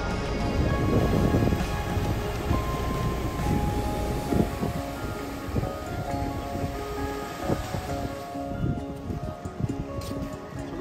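Background music with steady held notes, over a rushing outdoor noise that is strongest in the first few seconds and fades later.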